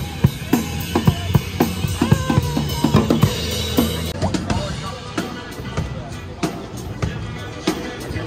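Street drummer playing an acoustic drum kit: quick, dense strikes on snare, bass drum and toms with cymbals.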